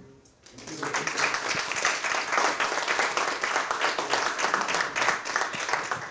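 Audience applauding, starting about half a second in and dying down near the end.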